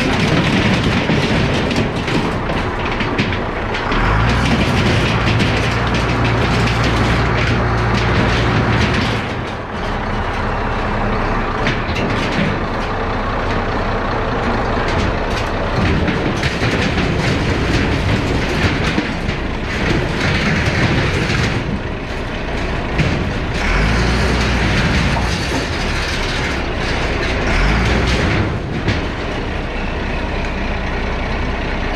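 Allis-Chalmers 7045 tractor's diesel engine running under load as its front loader lifts and shoves crumpled sheet-metal barn siding and lumber, with metal scraping and clattering throughout. The engine grows louder twice for several seconds as the loader works.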